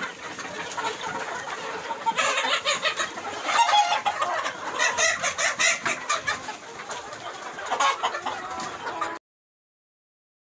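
A large flock of Sonali chickens clucking and calling over one another in a busy poultry shed, cutting off suddenly about nine seconds in.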